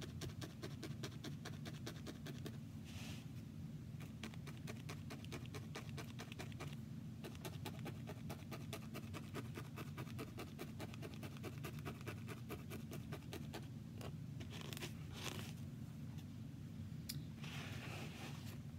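A barbed felting needle stabbing over and over through wool roving into a foam pad, several quick stabs a second with a scratchy, crunchy sound, as loose red wool fibers are tacked down onto the doll.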